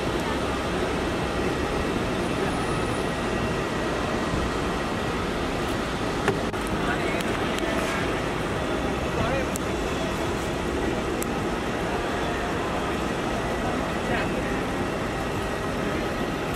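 Steady outdoor traffic noise at a roadside drop-off, mixed with indistinct background voices, and one brief sharp click about six seconds in.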